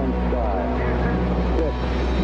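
Steady low rumble of a Mercury-Redstone rocket at liftoff, with crackly radio voice transmissions over it, from archival launch audio.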